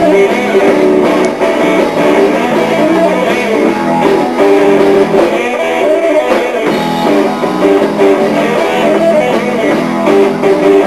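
Live band playing blues-rock, an electric guitar picking a fast run of notes over the band.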